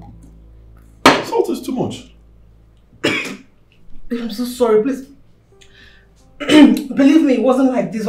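A woman coughing and spluttering in sharp bursts, then making wordless groans of distress, reacting to oversalted soup.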